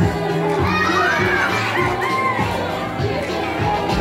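A crowd of excited children shouting and squealing, with music playing underneath.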